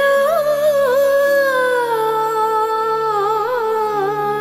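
A woman singing one long wordless held note, close to a hum, with small ornamental turns as it slowly sinks in pitch, over sustained harmonium chords.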